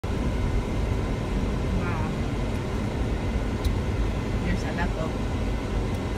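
Steady low rumble of road and engine noise heard inside a car's cabin.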